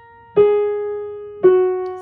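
Piano, two single notes struck slowly at the bottom of a descending right-hand F-sharp major scale, each lower than the last and left ringing: G-sharp about a third of a second in, then the keynote F-sharp about a second later.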